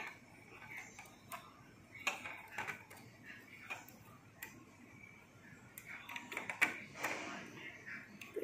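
Scattered light clicks and taps of a plastic hook working rubber bands over the plastic pegs of a band loom, coming closer together late on.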